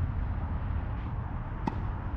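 A single sharp knock of a tennis ball impact near the end, over a steady low rumble.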